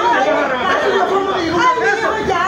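Several people talking at once, their voices overlapping and indistinct.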